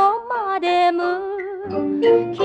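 Music: a Mandarin shidaiqu (old Shanghai-style pop) song playing, its melody held in long notes that glide from one pitch to the next over light accompaniment.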